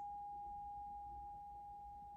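Brass singing bowl ringing out: one pure, steady tone that slowly fades.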